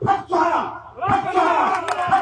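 A crowd of voices shouts mantra syllables together in loud, repeated calls, led by a man chanting into a microphone. The calls come about one every half second to a second, and each one falls in pitch.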